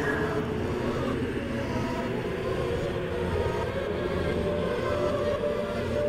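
Dark ambient horror soundscape: a steady low rumbling drone with a dense, hazy wash above it and no beat.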